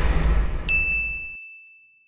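Logo sting sound effect: a deep whoosh fading away, then a single high, clear ding about two-thirds of a second in, held as one steady tone.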